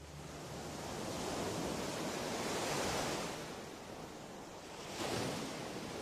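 Ocean surf washing onto a beach: one wave swells up and recedes, and another comes in near the end.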